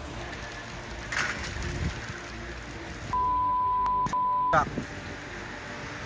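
A censor bleep: a steady high beep about a second and a half long with a brief break in the middle, about three seconds in, loudest thing here, over the steady hiss of rain.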